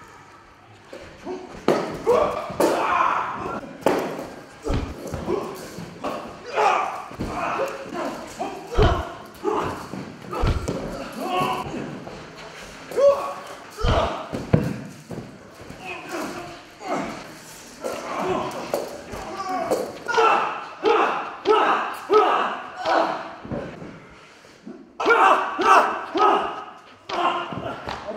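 Heavy thuds of bodies and blows landing on padded gym mats during a staged fight rehearsal, a handful of deep thumps at irregular moments in the first half, with voices throughout.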